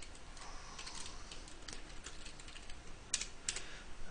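Faint computer-keyboard typing: scattered key presses with a short run of keystrokes a little after three seconds in, as a file name is typed to save a render.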